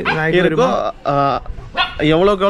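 A man talking, with a dog barking behind him.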